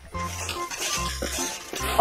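Background music with a repeating bass note, over the gritty rattle and scrape of wet pebbly gravel being scooped by hand out of a plastic toy dump truck's bed.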